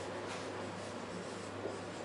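Faint scratching of a marker pen writing on a whiteboard, over a low steady room hum.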